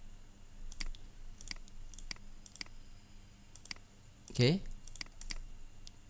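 Computer mouse clicking: about ten separate, unevenly spaced sharp clicks while items are picked in a software dialog. A short spoken word cuts in about two-thirds of the way through.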